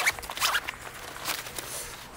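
The zip of a backpack's front admin-panel pocket being pulled open in several short rasping pulls.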